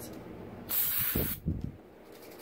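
Aerosol can of crazy string (silly string) sprayed in one short hiss lasting under a second, about two-thirds of a second in, followed by two soft low thuds.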